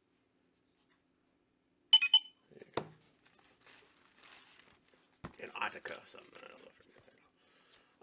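Plastic comic-book bag crinkling as a comic is handled and slipped into it, with a short, sharp, loud sound about two seconds in and a knock just after.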